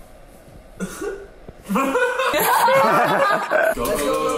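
Voices of young men laughing and exclaiming in a loud burst that starts about two seconds in and lasts roughly two seconds, after a quieter start.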